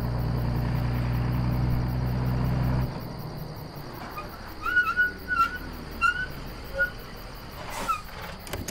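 A low steady hum that stops suddenly about three seconds in, then a handful of short chirping bird calls.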